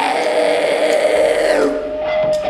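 Electric guitar through an amplifier ringing a held, steady note, with a low amp hum coming in about a second in.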